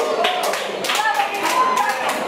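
Quick, irregular run of sharp claps, with young voices shouting over them in a large room.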